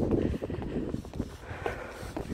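Strong, gusty wind rumbling on the microphone, a low, uneven drone.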